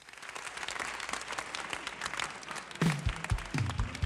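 Audience applauding, a dense patter of claps throughout, with a few low thumps near the end as the song's accompaniment is about to begin.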